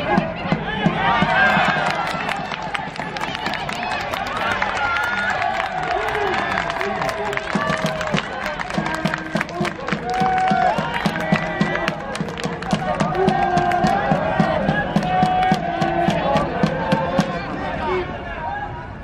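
A crowd in the stands chanting and singing together over a steady drum beat and clapping: an organised cheering section at a baseball game.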